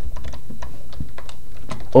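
Computer keyboard being typed on: a quick, irregular run of key clicks as a line of code is entered.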